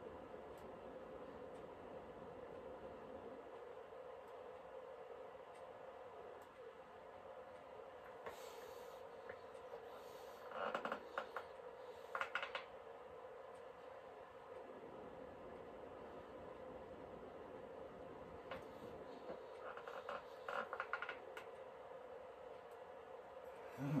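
Faint, steady room hum, with a few short clusters of brush strokes on canvas about ten and twelve seconds in and again around twenty seconds, as thin tree branches are painted in.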